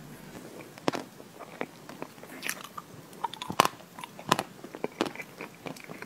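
Close-miked eating sounds of soft chocolate lava cake: wet chewing and lip-smacking made up of sharp, irregular clicks, the loudest about three and a half seconds in.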